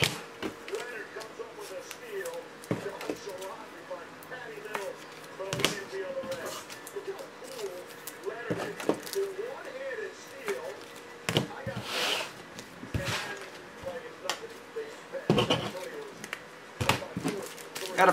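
Trading cards and rigid plastic card holders handled on a tabletop: scattered light taps and clicks as they are set down, with a brief louder rustle about two-thirds of the way through. A faint voice or music murmurs underneath.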